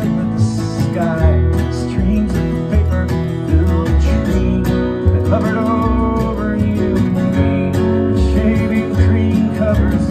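Taylor Builder's Edition 614ce steel-string acoustic guitar strummed in standard tuning, over a backing track with a steady bass line.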